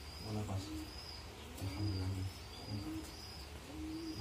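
Birds calling: a dove cooing low several times, with short, high chirps from another bird repeating throughout.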